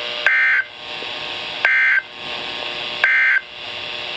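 Midland NOAA weather radio playing the EAS end-of-message signal: three short bursts of SAME digital data tones, about 1.4 s apart, marking the end of the severe thunderstorm warning. Steady radio hiss fills the gaps between the bursts.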